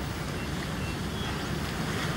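Steady, low background ambience of a film scene between lines of dialogue: a soft, even rumble with no speech.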